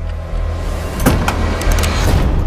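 Film-trailer sound design: a deep, steady low drone under a swell of noise that builds, with several sharp clicks and hits about a second in and again near the end.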